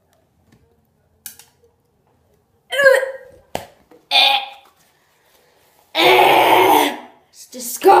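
A boy gagging and retching at a foul-tasting jelly bean: short gagging noises about three and four seconds in, then a loud spluttering blast about six seconds in as he spits it out, and more gagging near the end.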